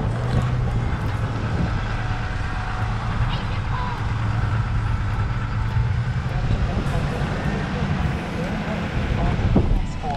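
A vehicle driving on a wet road, heard from inside the cabin: a steady low drone of engine and tyres under a constant hiss of road noise.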